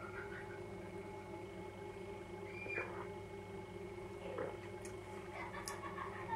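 A man drinking beer from a glass: a few faint swallowing and mouth sounds over a steady low hum.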